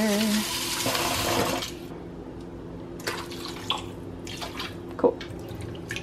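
Kitchen tap running into a clear salad spinner bowl of grapes in a stainless steel sink, filling it with water. The tap shuts off about two seconds in, leaving only a few faint clicks.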